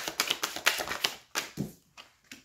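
A deck of tarot cards being shuffled by hand: a rapid run of crisp card clicks that stops a little over a second in, followed by a couple of separate soft taps.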